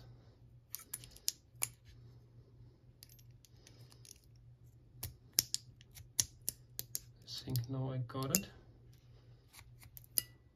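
Sharp, irregular metallic clicks from a padlock's lock core as the plug, with its key in, is worked against the pin stacks inside the cylinder housing; the pins are catching and keep the plug from sliding out.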